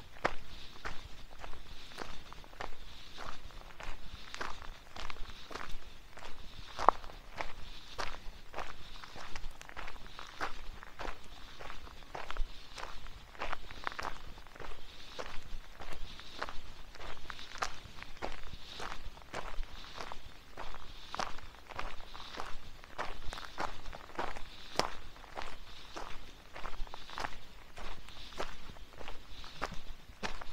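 Footsteps of a hiker walking at a steady pace on a packed dirt forest trail strewn with leaves, about two steps a second.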